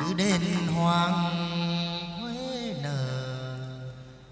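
Male hát văn (chầu văn) singer holding long, drawn-out chanted notes, stepping down to a lower note about three seconds in, with the ritual music ensemble behind.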